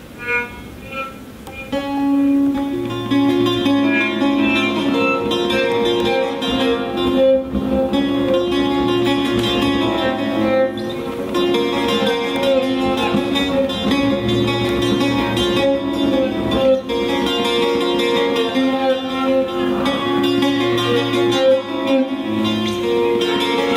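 Live trio of bağlama (long-necked saz), piano accordion and violin playing. A few single plucked notes open it, then the full ensemble comes in about two seconds in and plays on steadily.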